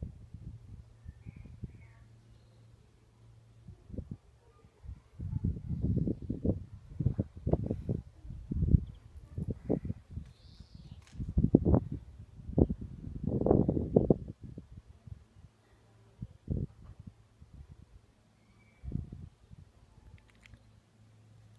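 Irregular low thumps and rumbles on a smartphone's microphone as the phone is handled and moved around, bunched in the middle of the stretch, over a faint steady hum.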